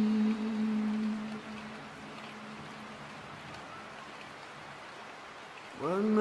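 A male reciter's long held note of Qur'an recitation fades out in the first second and a half. Steady, fairly faint rain fills the pause, and the voice comes back with a rising note just before the end.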